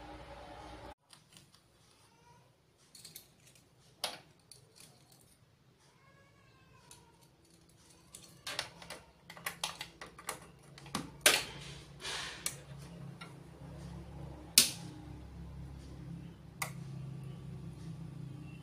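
Scattered clicks and knocks from switches and knobs being handled on a Yamaha MX-06BT mixer and Firstclass FCA3000 power amplifier. About halfway through, a low hum comes up and stays as the amplifier is switched on.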